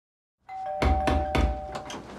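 A doorbell ringing with two steady held tones while someone knocks hard on a front door: three heavy knocks, then two lighter ones near the end. It starts about half a second in.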